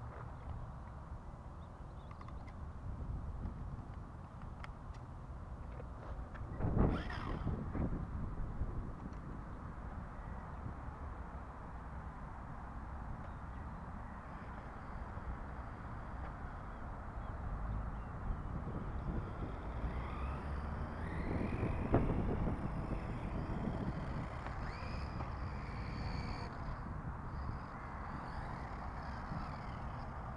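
A small battery-powered RC car running on concrete, its electric motor giving a faint whine that rises and falls in the second half, over a steady low rumble. A single knock about seven seconds in.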